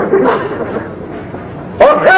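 A person's voice giving short cries in the first half second, then a quieter stretch, with loud shouting starting again near the end.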